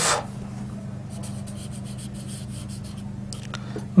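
Marker pen writing on a whiteboard in short scratchy strokes, over a steady low hum.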